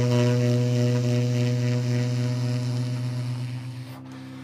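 Tenor saxophone holding one long low note that slowly fades and dies away near the end.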